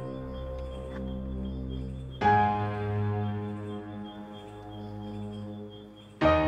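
Slow background music of sustained, held chords; a new chord comes in about two seconds in and slowly fades.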